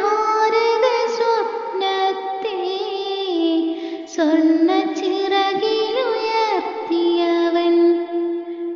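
A child singing a Malayalam song in a high voice, with held notes and ornamented pitch bends and a short breath about four seconds in.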